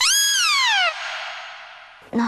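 A dramatic sound-effect sting: a loud, high pitched tone that glides steadily down in pitch for just under a second, then a hiss that fades away.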